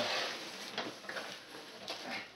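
A large cardboard shipping box scraping and rustling as it is pulled up from the floor. There is a short rush of scraping at the start, then a few soft knocks and rustles.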